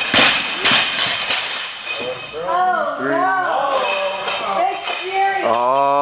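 A 303 lb loaded barbell with rubber bumper plates bouncing on a lifting platform after being dropped from overhead, several clanking impacts in the first second and a half that die away. Then loud voices shouting from about two seconds in, and again near the end.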